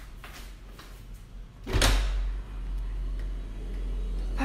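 Soft footsteps in slippers on a tiled floor, then a sliding glass door pulled open with one loud, sudden slide a little before halfway through. A low steady rumble carries on after it.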